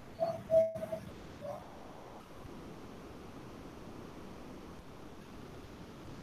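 Faint steady microphone hiss in a quiet room, with a few brief soft tones or vocal sounds in the first second and a half.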